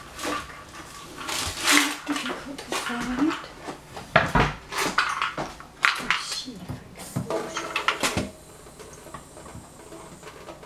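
Metal spoons clinking and rattling in quick clusters as a box of spoons is rummaged through, thinning out near the end.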